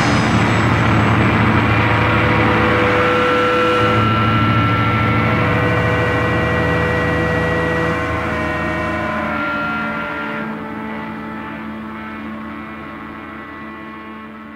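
A held amplifier feedback drone of several steady tones, some shifting pitch, rings out as the song's outro with no drums, slowly fading and dropping off more quickly in the second half.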